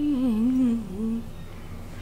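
A woman humming a wavering tune that drifts downward in pitch and stops a little over a second in.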